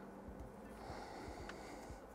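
Quiet room with a soft breath, and a faint tick about one and a half seconds in as a multimeter probe tip touches the circuit board.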